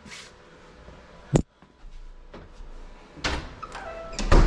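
A single sharp click about a third of the way in, then soft thumps and rustling near the end: a closet or cabinet door being handled and shut.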